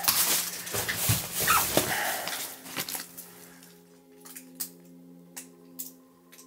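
Paper handling and rustling as a letter is picked up off a cluttered floor. About halfway through, a low, steady held drone of background music comes in, with a few faint clicks over it.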